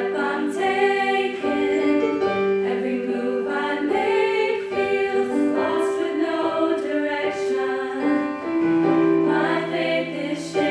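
A small group of teenage girls singing a song in harmony into microphones, accompanied by sustained keyboard chords.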